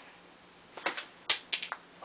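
A quick cluster of about six sharp plastic clicks and taps from LEGO bricks being handled, starting a little under a second in.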